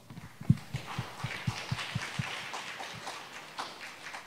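Audience applauding in a hall, with a run of soft low thumps about four a second in the first half.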